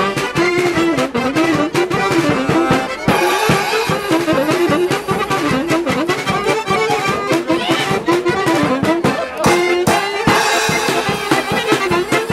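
A Polish village folk band playing a lively traditional tune. A button accordion, a fiddle and a saxophone play together over a steady, even pulse.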